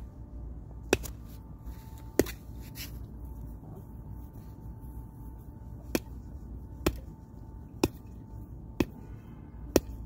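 A rock knocking against a coconut's shell: about seven sharp knocks, the last five coming roughly a second apart.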